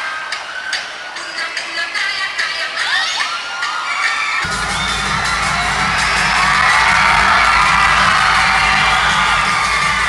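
Large crowd of spectators cheering, shouting and whooping, with many shrill calls. About four and a half seconds in, music with a heavy low beat comes in underneath, and the cheering swells.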